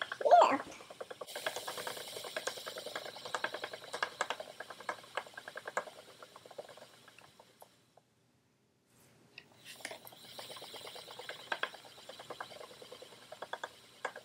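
Wooden treadle spinning wheel turning as wool is spun onto the bobbin, with quick irregular clicking and rustling. The sound cuts out briefly about eight seconds in, then resumes.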